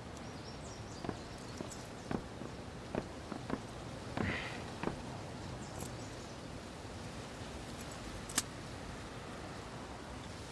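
Footsteps on a hard surface, a few short knocks about half a second apart, over a steady outdoor background hum. A single sharp click comes about eight seconds in.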